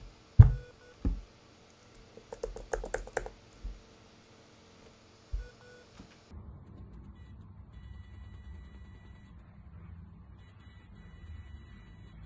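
Several sharp knocks and clicks, the loudest a thump about half a second in. About six seconds in, an Arduino face-touch alarm's buzzer gives a faint, steady high electronic beep that breaks off briefly a few times, the sign that its ultrasonic sensor has detected a hand near the face.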